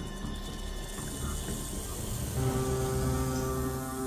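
A rattlesnake's tail rattle buzzing under documentary music. About halfway through, a sustained low music chord swells in.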